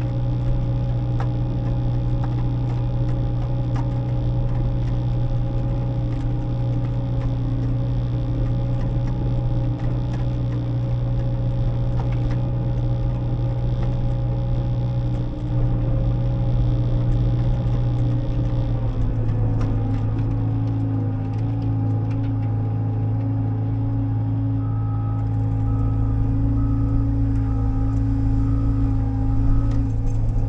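Bobcat T66 compact track loader's diesel engine running steadily under load, heard from inside the cab, with a high whine over it that stops about two-thirds through as the engine note drops slightly. Near the end a short beep repeats about once or twice a second.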